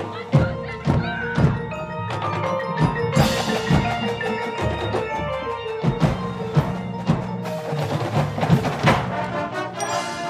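Drum corps show music led by front-ensemble mallet percussion: marimba and bell-like keyboard notes with sharp struck accents over sustained pitched chords.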